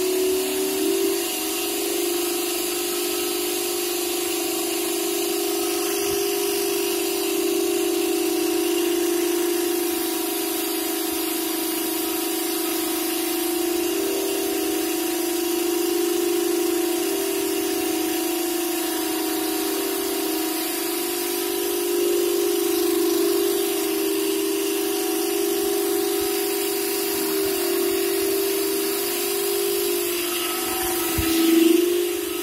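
Carpet-cleaning vacuum machine running steadily, drawing air through its hose and hand tool as the tool is worked over the carpet: a constant motor hum with a wide rush of air.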